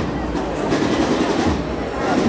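Crowd noise: many people talking at once over a steady, dense clatter with no pauses.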